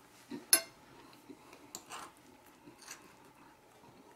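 A fork clinking and scraping against a dinner plate: one sharp clink about half a second in, then a few faint taps and scrapes.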